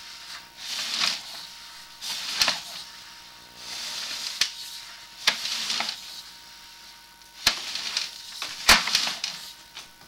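Sewer inspection camera's push cable being fed down a clay sewer line, scraping in repeated strokes every couple of seconds, with a few sharp clicks.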